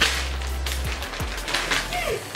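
Plastic chocolate-bar wrappers being torn open and crinkled by hand, with a sharp snap as a wrapper rips at the start, then a continuous rustle of small crackles.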